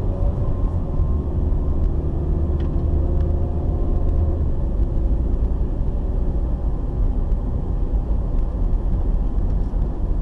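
Car engine and road noise heard from inside the cabin while driving: a steady low rumble with a faint engine hum over it.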